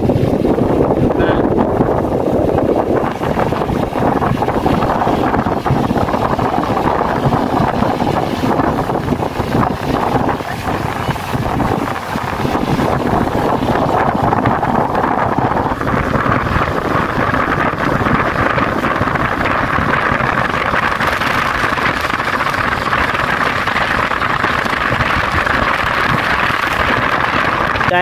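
Steady road and wind noise of a car driving on a wet road, heard from inside the car, with wind buffeting the phone's microphone. About halfway through, the hiss turns brighter and higher.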